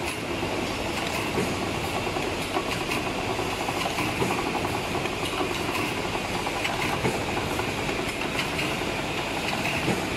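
Blister packing machine running: a steady mechanical clatter made up of many small rapid clicks.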